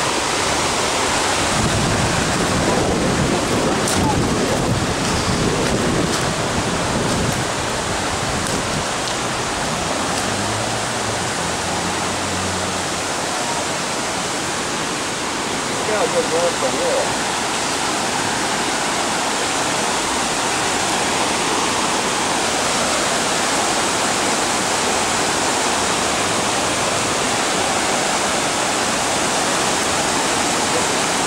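Floodwater rushing: fast, churning storm water from a stream over its banks, pouring across a street in a steady rush.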